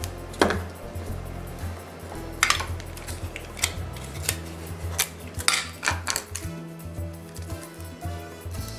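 Background music with a low, shifting bass line, over a string of light clicks and knocks as small craft items such as scissors are handled and set down on a ceramic tile countertop.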